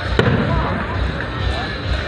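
An aerial firework shell bursting with one sharp bang just after the start, over the chatter of onlookers' voices.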